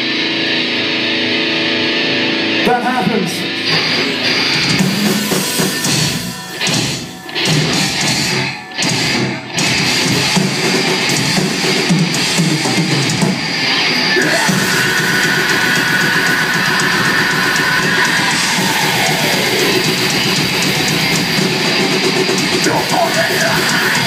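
Heavy metal band playing live: distorted electric guitars, drums and vocals, loud and thin in the bass. A run of short stops breaks up the riff between about six and ten seconds in, then the band plays on steadily.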